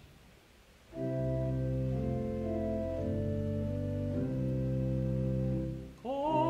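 About a second of near-quiet, then an organ plays the introduction to a hymn in held chords that change about once a second, breaking off just before the singing begins.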